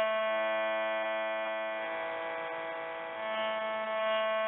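A steady held musical drone of several sustained notes, like a sruti box or harmonium, with a lower note coming in just after the start.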